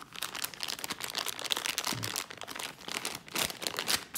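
Clear plastic zip-lock bag crinkling and rustling in a continuous, irregular crackle as it is handled and squeezed by hand.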